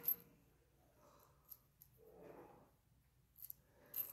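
Near silence with a few faint, light clicks and a soft rustle, from small hardware being handled.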